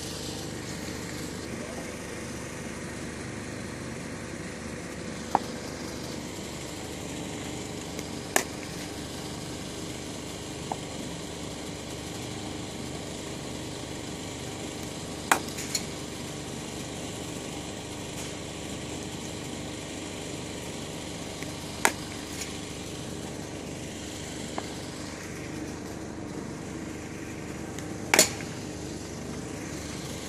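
Cricket bat striking the ball in net practice: single sharp cracks every several seconds, the loudest near the end, some followed by a fainter knock, over a steady low hum.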